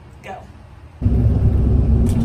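Car cabin noise: a steady low rumble of engine and road starts suddenly about halfway through, with a faint low hum in it. Before it, only quiet room tone and one short spoken word.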